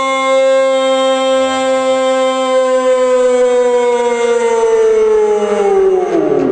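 A single long held vocal note, steady for about four seconds, then sliding slowly down in pitch and dying away.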